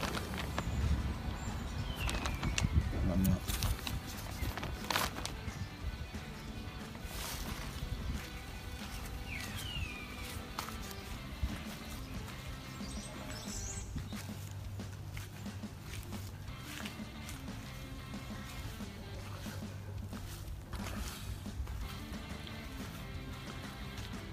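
Quiet background music, with rustling and handling clicks from the green polyethylene tarp in the first few seconds.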